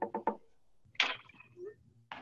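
Two sharp clacks about a second apart, a hard kitchen utensil being knocked or set down as a handheld lemon squeezer is handled over a blender jar.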